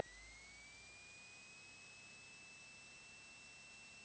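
Near silence with a faint thin electrical whine that rises in pitch over the first second and a half, then holds steady.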